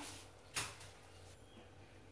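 A single short click about half a second in, over faint hiss and otherwise quiet room tone.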